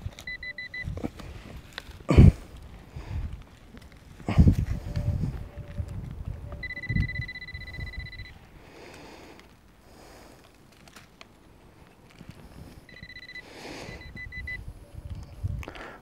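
Handheld metal-detecting pinpointer sounding a high tone as it is held against a dug clod of soil: a short run of rapid beeps about a second in, a steady tone of nearly two seconds around the middle, and another tone breaking into quick beeps near the end. The tone signals the metal target inside the clod. Two sharp knocks a few seconds in and rustling from soil being handled.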